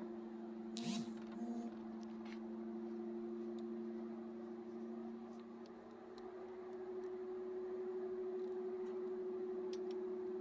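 A steady low hum, with a sharp click about a second in and a few faint light clicks from hands and tools working at the wiring and steering column under a car's dashboard.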